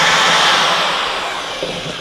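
Corded electric drill running steadily in a large vat of pottery glaze, stirring it to keep the glaze materials suspended; it eases off near the end.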